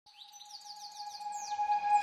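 Opening of a background music track fading in: a held tone with a run of quick, falling bird-like chirps above it, growing steadily louder.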